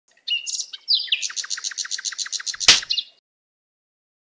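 Songbird chirping, then a fast run of repeated high notes, about nine a second. A single sharp thump cuts in about two and a half seconds in and is the loudest sound.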